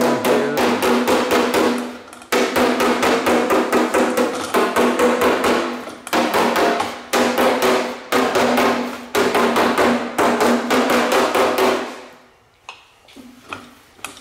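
A steel body hammer strikes sheet steel backed by a dolly in quick runs of several blows a second, and the panel rings with each blow. This is hammer-and-dolly work knocking down a high spot after heat shrinking. The hammering stops about two seconds before the end.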